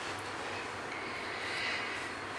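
A steady background hiss, like room or recording noise, that swells slightly over the second half.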